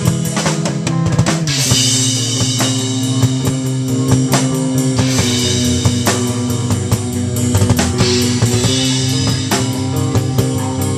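A live rock band playing loud: a drum kit with rapid drum and cymbal hits under electric guitars. Partway through the first two seconds the pitched notes slide down before settling into a held riff.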